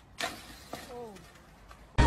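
A sharp knock, a few faint clicks, then a short cry from a person falling in pitch, about a second in.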